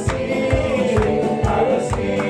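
A group of men singing a gospel worship song together into microphones, with instrumental backing that keeps a steady beat under the voices.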